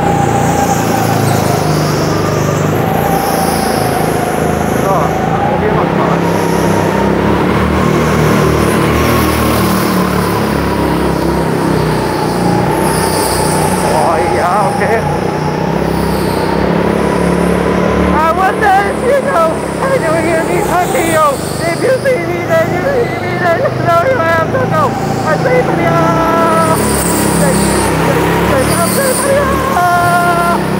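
Go-kart engine running under throttle through a lap, with the tyres squealing as the kart slides sideways through the corners: a long wavering squeal, then shorter chirping squeals in the second half. The tyres are deliberately overheated and sliding for most of the lap.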